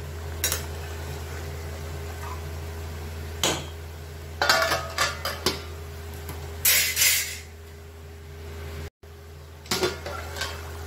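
A steel spatula clinking and scraping against a steel kadhai of simmering curry, then a steel lid set on the pan with a longer scraping clank about seven seconds in. A steady low hum runs underneath.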